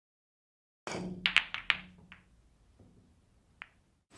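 A quick run of five or six sharp clicks or taps, then one more click near the end, over a faint low hum.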